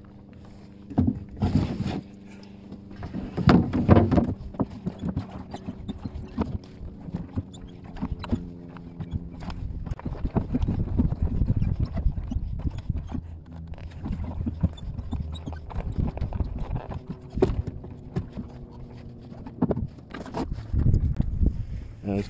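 Irregular knocks and clunks from a wooden Mirror dinghy's hull and fittings as gear is handled aboard. A faint steady low hum runs underneath for several seconds in the middle.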